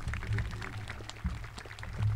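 Scattered clapping from an outdoor crowd, irregular claps with no steady rhythm, over a low steady rumble.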